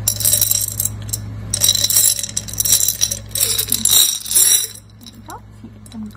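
Pearl beads rattling and clinking against the inside of a glass jar as it is turned and tipped, in about three bursts over the first four and a half seconds.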